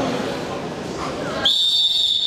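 Crowd chatter, then a referee's whistle sounding one long, steady, shrill blast from about one and a half seconds in, signalling the start of the wrestling bout.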